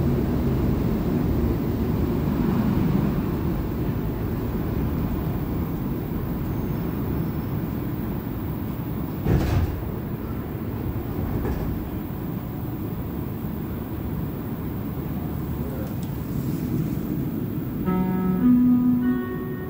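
Cabin running noise of a Montreal metro Azur (MPM-10) rubber-tyred train: a steady low rumble and hiss. There is a single sharp knock about halfway through, and the noise eases off gradually as the train slows into a station.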